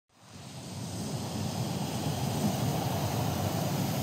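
Steady rushing noise of sea surf and wind outdoors, fading in over the first half-second.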